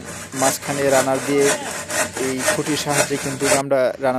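Handsaw cutting through a bamboo pole in repeated back-and-forth strokes, breaking off abruptly a little before the end.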